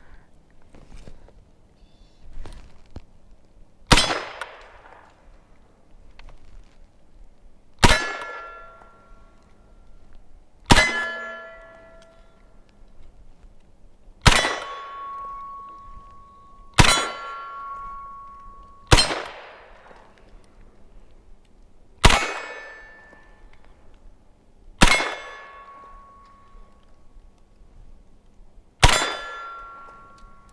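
Nine shots from an HK SP5 9 mm, fired at uneven intervals of about 3 s. Each shot is followed by the ringing of a struck steel target, which fades out over about a second.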